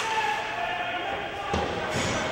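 Ice hockey play in an indoor rink: a sharp crack of a stick on the puck at the start, voices shouting, and a heavy low thud about a second and a half in.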